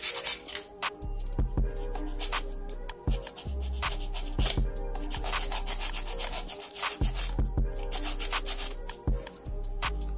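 Hand nail file filing acrylic nails in quick back-and-forth strokes, several a second, with a couple of brief pauses.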